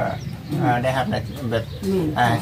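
A man talking in Thai, with a short pause near the start.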